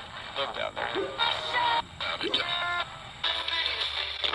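Handheld RadioShack pocket radio's speaker playing choppy, broken snatches of music and voices, cut every fraction of a second. About three seconds in the sound changes and a low hum comes in.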